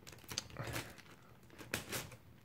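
Plastic pieces of a MoYu 21x21 cube clicking and scraping faintly as a block of layers is turned by hand, with a few short clicks, the sharpest near the end.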